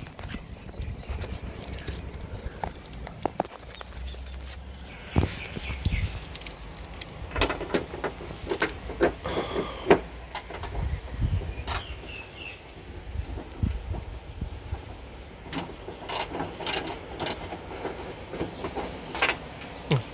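Hand ratchet with a 10 mm socket and extension clicking in short runs as a bolt is undone, mixed with metal clinks and knocks from handling the tool.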